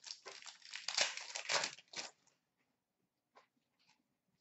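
A 2013-14 Panini Crown Royale hockey card pack's foil wrapper being torn open and crinkled by hand, a dense rustling that lasts about two seconds and then stops.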